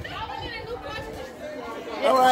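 Background chatter of several young people's voices, no clear words.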